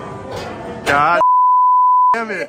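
Censor bleep: a loud, steady single-pitch beep about a second long, starting a little past halfway, with all other sound cut out beneath it to cover a spoken word. A voice is heard just before it.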